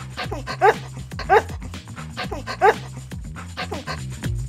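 A dog sound effect barking three short barks over light background music.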